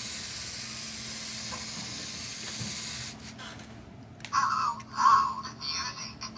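The small electric motors of a LEGO Mindstorms walking robot whir steadily and quietly as it walks. About four seconds in, louder tinny music starts in choppy bursts.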